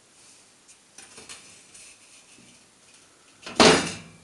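Faint scrapes and taps as a steel channel piece is handled, then a single loud metallic clank near the end as it is set down on a flat steel bed to check it for straightness.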